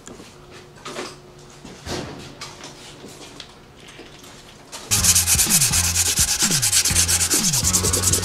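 Primed trim panel being hand-sanded with 180-grit sandpaper: quiet scuffing at first, then about five seconds in loud, rapid back-and-forth scratching strokes.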